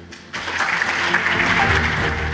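Audience applauding, starting just under half a second in, with music coming in underneath about halfway through.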